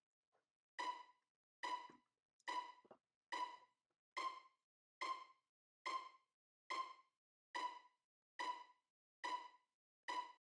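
Software synth (the Roland Zenology plugin) playing a simple repeating melody of short, quickly fading notes, about one every 0.85 seconds, eleven in all.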